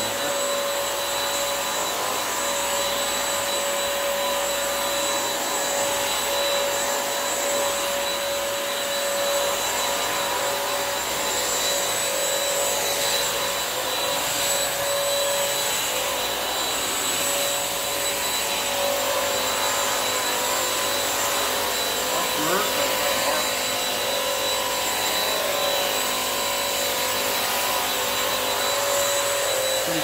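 Bissell CrossWave wet-dry mop vacuum running steadily as it is pushed over a wet tile floor: a constant rush of suction and brush roll with a steady whine over it.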